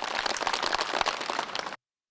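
Studio audience applauding, a dense patter of many hands clapping that cuts off suddenly near the end.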